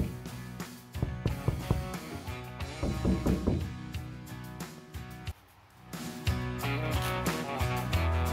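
A series of hand knocks on the bare galvanized sheet-steel wall of a minibus body, not yet backed with polystyrene (telgopor) insulation, over the first three or four seconds. Acoustic guitar background music plays throughout.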